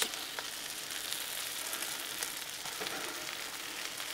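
Cheese-topped smashburger patties sizzling on a hot Blackstone steel griddle, a steady hiss, with a few faint clicks from the metal spatula.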